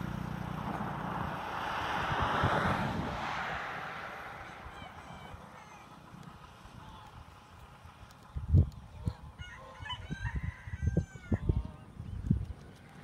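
Domestic geese honking, a cluster of short calls in the last three seconds. Sharp low thumps on the microphone come with them, the loudest just before the calls begin. Early on a broad rushing noise fades away.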